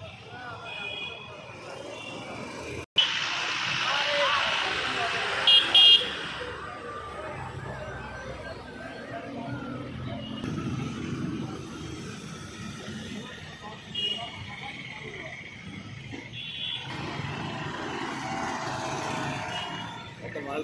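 Vehicle horns honking in short toots several times, loudest twice about six seconds in, over a background of voices and general outdoor noise.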